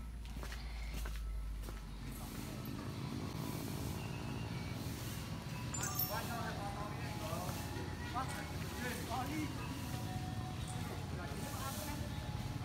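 Distant, indistinct voices over a steady low background noise.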